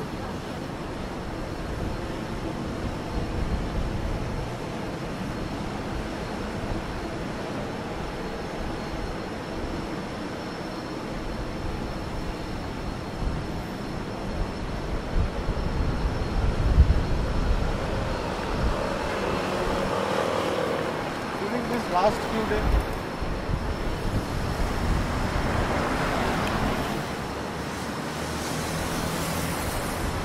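City street ambience: a steady hum of traffic on the adjacent road, with passing vehicles swelling louder about two-thirds of the way in and again near the end.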